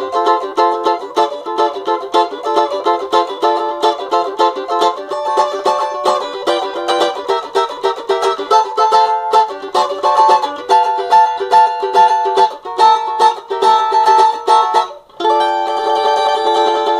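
Pau-ferro cavaquinho played electric, through its basic pickup and a small amplifier: fast strummed chords at first, then chords with high notes ringing over them, with a brief break near the end.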